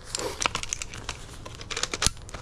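Daisy Red Ryder lever-action BB gun being worked by hand: a run of sharp metal clicks and short rattles from its cocking lever and action, thickest about half a second in and again near the end.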